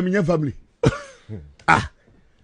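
A man's speech breaking off, followed by three short throat-clearing coughs from a man at a studio microphone.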